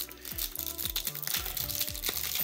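Clear plastic cellophane wrapper on a trading-card hanger box crinkling as fingers handle it, over background music with steady low notes.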